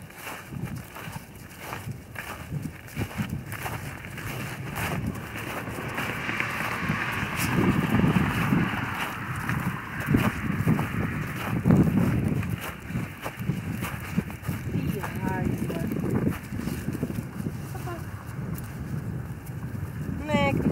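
Wind buffeting the microphone in irregular gusts, with scuffing footsteps through wet grass and slushy snow.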